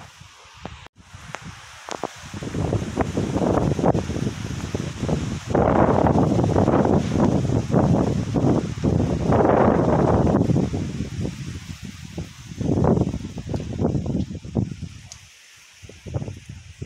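Wind blowing on the microphone with tree leaves rustling, a rough noise that starts about two seconds in, swells in gusts through the middle and dies down near the end.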